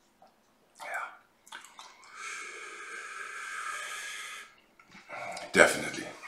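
A man's long breathy exhale through the mouth, lasting about two seconds, as he tastes a peated whisky. Short mouth and breath noises come before it, and a louder breathy sound comes near the end.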